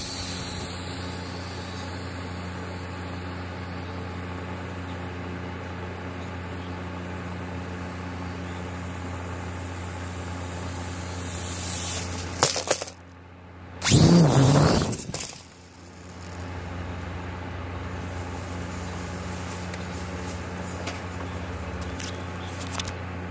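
Heliquad 2.4 Bladerunner mini quadcopter's four small motors and propellers buzzing steadily in flight. The sound dips briefly about two-thirds of the way in, then becomes much louder for a second or so before settling back to the steady buzz.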